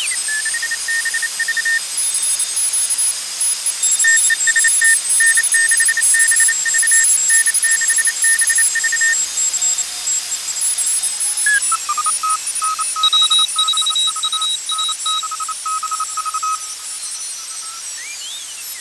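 Morse code (CW) signals heard through a 12AU7 single-tube regenerative shortwave receiver as it is tuned slowly across the CW end of the 40-meter band: keyed beeps of steady pitch over constant hiss. About eleven and a half seconds in, a lower-pitched station comes in and takes over.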